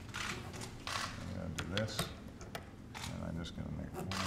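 Pen scratching across paper as a bill is signed, with a run of quick, sharp clicks in the middle and low murmuring voices.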